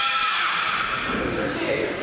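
Several high-pitched voices shouting, drawn out and overlapping: spectators cheering on the fighters. A long, rising shout fills the first half-second, then merges into a general din of voices.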